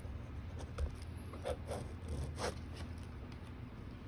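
Pen writing on paper: a handful of short strokes as a word is finished and a box is drawn round it, over a steady low room hum.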